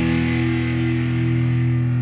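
Live band: a held, distorted electric guitar chord ringing out, its top end slowly fading, with no drums playing.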